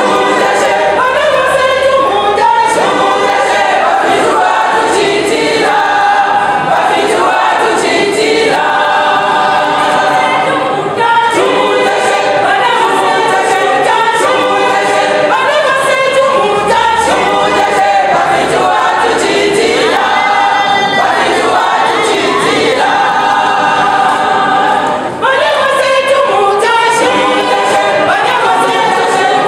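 Women's choir singing a gospel song, loud and steady throughout.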